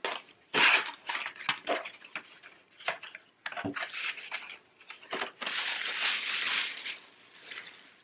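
A thin cardboard gift box being folded and handled, with a string of short crackles and taps. Near the end there is a longer steady rustle of paper being pulled out.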